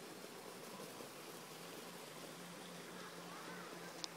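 Faint outdoor background: an even hiss with a low steady hum, and a faint short rising-and-falling tone near the end.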